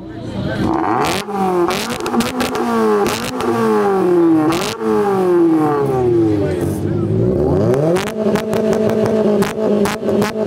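A car engine is revved hard through its exhaust in repeated blips, the pitch climbing and dropping about once a second, with sharp cracks among them. From about eight seconds in, it is held at steady high revs.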